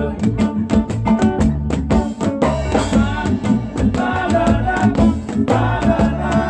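Live kaneka band music: drums and shaker-like percussion keep a quick, even beat under a bass line and electric guitar, with a lead voice singing.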